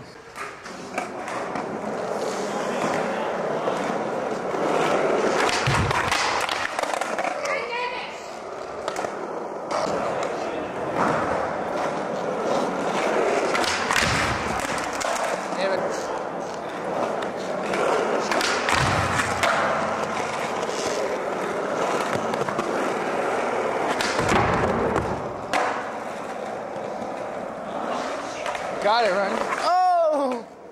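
Skateboard wheels rolling on a smooth concrete floor, a steady rumble broken several times by the thuds and clacks of tricks and landings.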